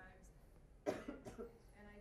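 A person coughing, a short loud fit of two coughs about a second in, heard in a room over faint distant speech.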